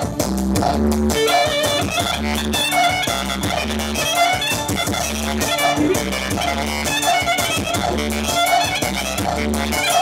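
Live amplified dance-band music: a clarinet plays a wavering, ornamented melody over a steady pulsing bass beat, the melody coming in about a second in.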